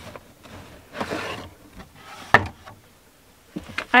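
A cardboard shoebox being opened and handled: a brief rustling scrape of cardboard about a second in, then a single sharp tap a little past the midpoint.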